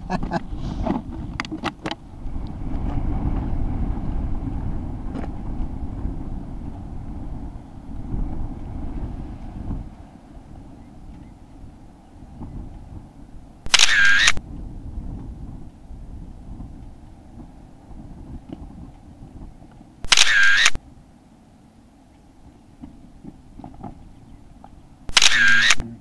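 Wind buffeting the camera microphone for the first ten seconds, then three camera shutter clicks, each about half a second long and about six and five seconds apart.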